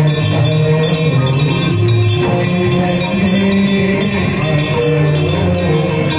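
Devotional aarti music: a chanted song with long held notes, over bells and jingling percussion ringing in a fast, steady rhythm.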